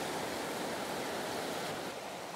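Shallow mountain stream rushing over rocks, a steady wash of water.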